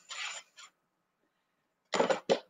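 A short puff of breath blown onto a deck of cards held at the lips, lasting about half a second.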